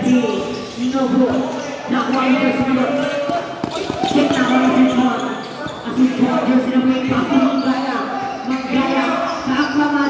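A basketball being dribbled and bounced on a concrete court, with repeated sharp bounces, under a steady mix of raised voices from players and spectators calling out through the play.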